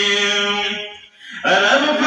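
A man chanting a Pashto nazam (devotional poem) with no instruments. He holds a long note that fades out about a second in, then after a short breath starts the next line with a rising glide.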